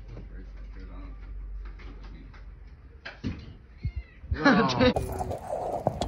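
A domestic cat meowing.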